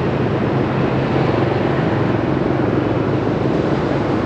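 A motorbike engine running steadily while riding through city traffic, a continuous low hum under steady road noise.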